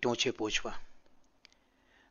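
A man's narrating voice speaking Gujarati, ending less than a second in, then a quiet pause with two faint clicks.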